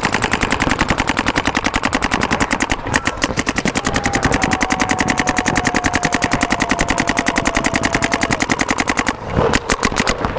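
Several electronic paintball markers firing in rapid, evenly spaced strings, more than ten shots a second, as players lay down fire off the break. The fire pauses briefly about three seconds in and stops about nine seconds in.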